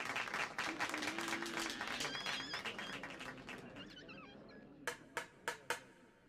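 Audience applause that fades away over about four seconds, followed by four sharp taps of a conductor's baton on the music stand calling the orchestra to attention.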